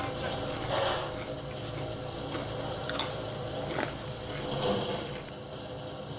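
Paper bag rustling and crinkling as it is pulled open and handled, with irregular sharp crackles.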